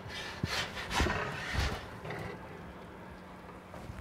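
Wooden pizza peel scraping along the pizza stone as it is slid under a baked pizza to lift it out of the oven: a few short scrapes in the first two seconds, then quieter.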